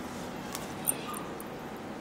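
Marker on a whiteboard: a couple of short, high squeaks and a sharp tap just before a second in, over a steady room hiss.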